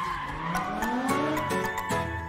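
A car engine revving up with tyres skidding, mixed under advert music; about a second in, sustained music chords with a regular beat come to the fore.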